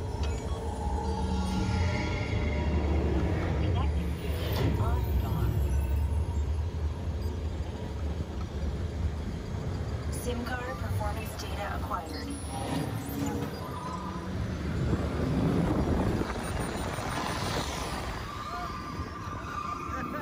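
Test Track ride vehicle running along its track with a low rumble, mixed with the ride's onboard music and sound effects.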